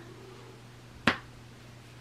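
A single short, sharp click about halfway through, over a faint steady low hum.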